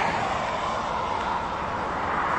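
Steady rushing noise of traffic on a motorway alongside, with no single vehicle standing out.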